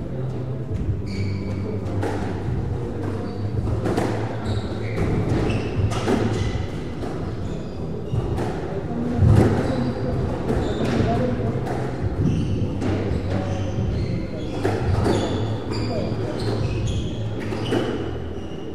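Squash rally: repeated sharp knocks of the ball off the rackets and the walls, with short high squeaks of shoes on the wooden court floor, over a steady low hum.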